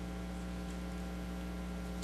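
Steady electrical mains hum: a constant low buzz with a ladder of overtones, unchanging in level.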